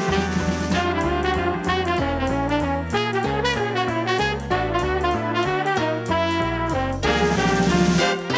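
Big band jazz: trumpet, trombone and saxophone playing together over a live drum kit with cymbals, and a bass line from a Korg M1 synthesizer stepping from note to note. Near the end the bass line drops out and the horns swell slightly louder.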